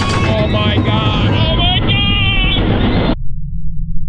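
Riders on a wooden roller coaster letting out high-pitched screams as the train goes over the top into the drop, over wind rushing loudly on the microphone. Just after three seconds in the high sounds cut out abruptly, leaving only a loud low wind rumble.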